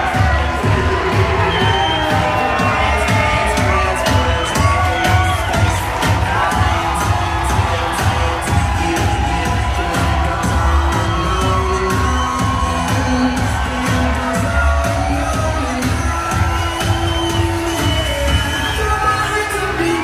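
Loud pop music with a steady beat and a singer, over a crowd cheering.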